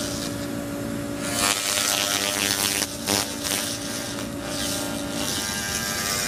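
Handheld laser rust-removal cleaner working on a rusty metal grate: a steady electric hum under a fizzing hiss that swells and fades as the head sweeps over the rust. The hum stops about five seconds in.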